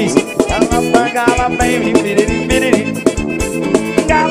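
Forró band music, an instrumental passage without vocals, with a steady drum beat under melodic lead instruments.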